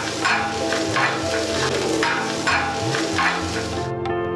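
Vegetables sizzling on a flat steel griddle, with several scrapes of a metal spatula as they are stirred, under steady background music.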